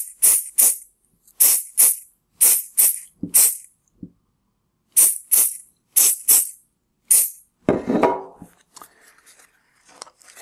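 Aerosol can of chocolate freeze spray hissing in about a dozen short bursts, in quick groups of two to four, stopping about seven seconds in. A brief rustle follows near the end.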